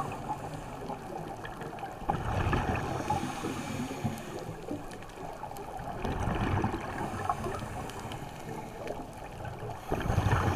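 Scuba diver breathing through a regulator, heard underwater: gurgling exhaled bubbles that swell about every four seconds over a steady rushing hiss.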